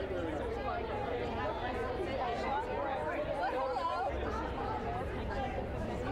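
Background chatter: many people talking at once in a steady babble of overlapping voices.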